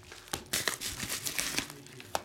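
Trading-card pack wrapping and plastic card holder crinkling as they are handled, in irregular short bursts.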